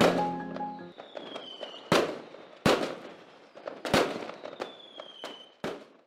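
Fireworks going off: four loud sharp bangs with smaller crackles between them, and a falling whistle before two of the bursts. The last notes of music fade out in the first second.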